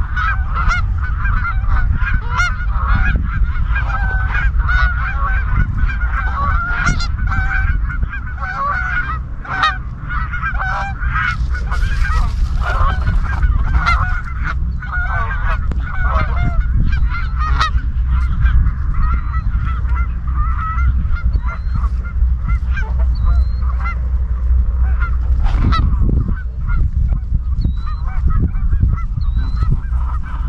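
A flock of Canada geese honking and calling, many overlapping calls close by, over a steady low rumble.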